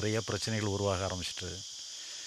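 Insects chirring steadily, a continuous high-pitched drone, under a man's speech that stops about a second and a quarter in and leaves the insect drone on its own.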